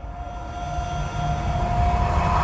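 Intro sound effect: a swelling riser, a noisy whoosh-like build with one steady held tone, growing steadily louder.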